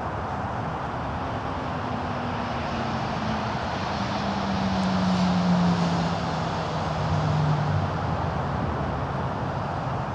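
Steady background traffic noise, with one vehicle passing by. Its low engine note slowly falls in pitch and is loudest about five seconds in.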